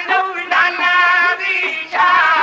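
Punjabi dhadi music: a melody of held notes with wavering ornaments, carried by sarangi or voices.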